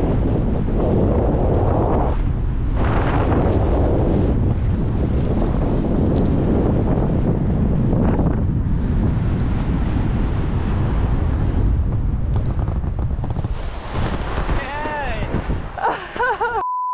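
Wind buffeting the camera microphone during a parachute descent: a loud, steady rush that eases off in the last few seconds as the canopy slows for landing. Near the end, a person's voice calls out in short rising-and-falling cries.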